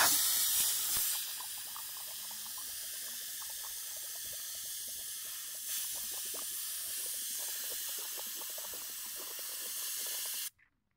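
Compressed air hissing steadily through a gravity-feed spray gun held open, louder for the first second, while air blowing back into its water-filled cup sets the water bubbling.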